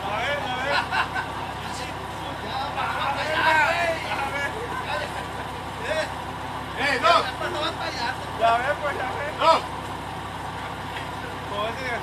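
Jeep Wrangler Rubicon's engine running steadily at idle, with scattered distant shouts and chatter of people standing around it.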